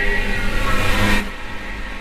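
Logo intro sound effect: a swelling whoosh with layered falling tones that builds, then cuts off sharply a little over a second in, leaving a softer lingering tail.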